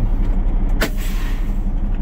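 Peterbilt 389 semi truck idling with a steady low diesel pulse. Just under a second in comes a sharp pop of air, then a hiss lasting about a second that fades: the truck's air brakes exhausting.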